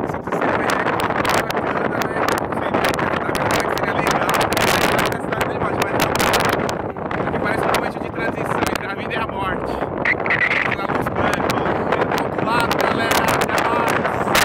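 Strong wind buffeting the microphone, nearly drowning out a man's voice talking through it.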